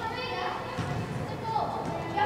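Young players' voices shouting short calls across a large indoor soccer hall, echoing, with one call falling in pitch about one and a half seconds in.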